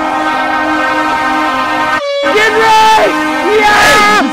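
Arena goal horn sounding one steady tone, the signal that a goal has been scored. It breaks off about two seconds in, and excited shouting from players follows over it.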